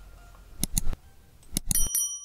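Subscribe-button animation sound effects: a quick run of mouse clicks a little past halfway, then more clicks and a bright notification-bell ding near the end that rings on.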